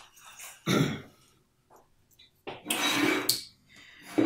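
A man coughing and clearing his throat: a short sharp burst about a second in, then a longer, rougher one a couple of seconds later.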